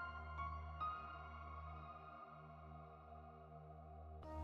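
Soft ambient meditation music: a low steady drone under held tones, with a few gentle notes struck in the first second that then fade.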